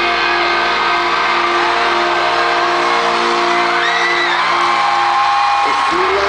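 Live rock band holding sustained chords through an arena PA during an instrumental stretch of the song, with fans whooping and screaming over the music.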